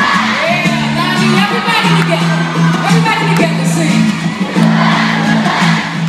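Large arena crowd, mostly men's voices, singing a pop chorus along with the live band's backing music, with a few whoops.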